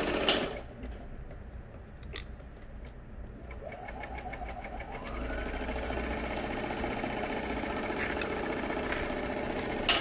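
A motor drones steadily, its pitch rising between about three and five seconds in and then holding level, with a few short metallic clicks from screwing the oil pump back onto the sewing machine.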